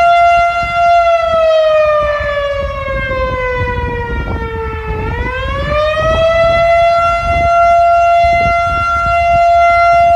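A loud, sustained siren-like tone. It holds one pitch, slides down for a few seconds, rises back and holds steady again. A low rumbling noise runs underneath.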